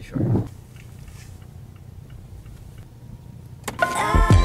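Inside a car's cabin, a steady low drone of the engine and road as the car creeps forward slowly. Loud music comes in suddenly near the end.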